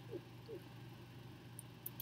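A woman's soft, quiet chuckling: a few brief, faint falling notes about half a second apart, over a low steady hum.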